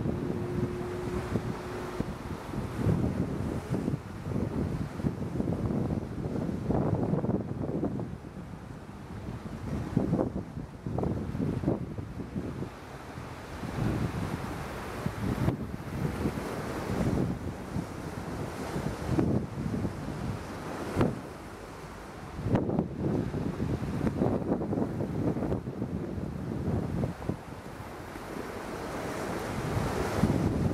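Wind buffeting the microphone in uneven, low gusts, over the wash of open sea water.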